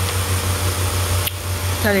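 A steady low hum runs without a break. A woman's voice starts near the end.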